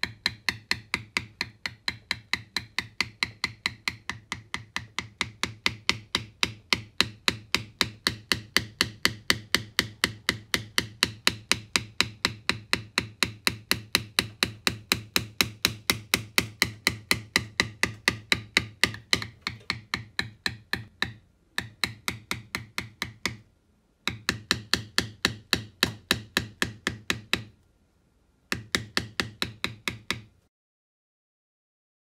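Steel leather beveler struck with a mallet in rapid light taps, about four a second, as it is walked along a carved outline in tooling leather lying on a stone slab. The tapping breaks off briefly three times near the end.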